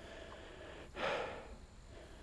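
A man takes one audible breath through his nose about a second in, nosing a glass of whiskey held to his face.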